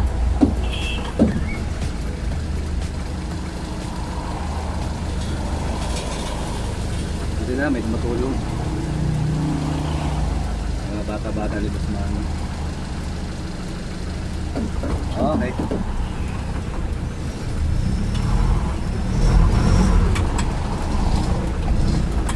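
A vehicle's engine running at idle, heard from inside the cab as a steady low hum. It gets louder for a few seconds near the end.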